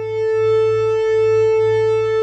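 A single held software-synthesizer note played from a Roland A-49 MIDI keyboard, one steady pitch with a bright stack of overtones. Its volume, under the D-Beam controller's hand-controlled volume setting, swells up slightly during the first half second.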